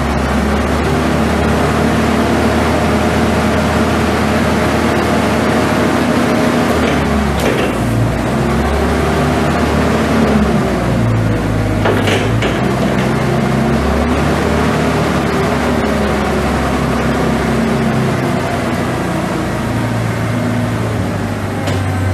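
Hyster 194A forklift's six-cylinder gas engine running, its speed rising and falling several times, with a clunk about seven seconds in and another about twelve seconds in.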